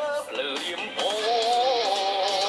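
A song playing: a voice singing long, wavering held notes over backing music.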